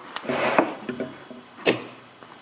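Wooden matryoshka nesting-doll pieces being handled: a short rubbing scrape, then one sharp wooden click a little before the end.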